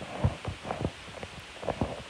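Handling noise on the microphone of a handheld recording phone: a string of soft low thumps and bumps at an uneven pace as it is moved.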